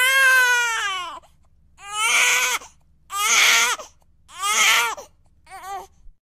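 A child crying: one long wailing cry that falls in pitch, then four shorter sobbing cries at roughly even spacing, the last one softer.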